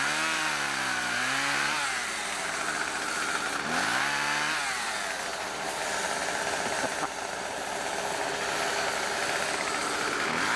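Small two-stroke chainsaw revving up and back down twice in the first half as it cuts brush, then running more steadily at lower speed.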